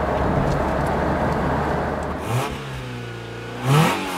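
Steady engine and road noise from inside the cabin of a moving 1982 Peugeot 505 GR Estate. About two and a half seconds in, a clear engine note comes through, holds, then climbs sharply in pitch near the end as an engine revs.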